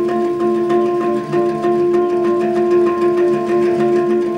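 An ensemble of handpans playing together: a run of quick struck notes, about four a second, over sustained ringing tones.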